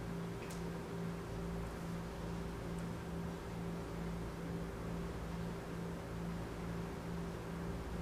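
A steady low hum with a faint hiss, pulsing faintly and evenly throughout: room tone from a fan or similar machine.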